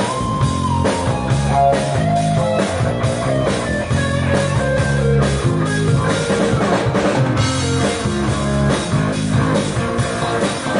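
Live rock band playing at full volume: electric guitars over a drum kit keeping a steady beat.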